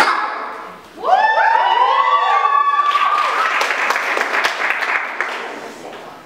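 A short sharp click, then several women's voices shout a long rising call together, held for about two seconds. The room then breaks into cheering and applause that fades away near the end.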